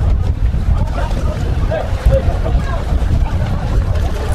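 Wind rumbling steadily on the microphone, under the chatter and calls of a crowd of people close by.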